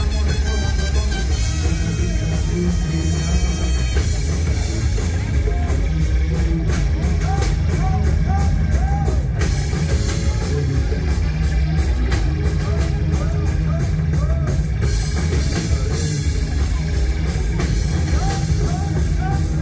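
A rock band playing live and loud, amplified: drum kit with electric guitar and bass, and a steady cymbal beat at about two strokes a second through the middle.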